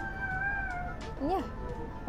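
Background music with a high held note for about the first second, then a short spoken "yeah" with a rising-and-falling pitch.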